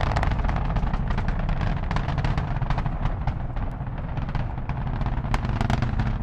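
Saturn V rocket engines at liftoff: a steady, deep rumble with dense crackling, easing slightly toward the end.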